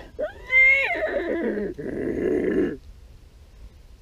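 A man's drawn-out, high-pitched wordless vocal sound, a silly whinny-like hoot that bends down in pitch and turns raspy, lasting about two and a half seconds.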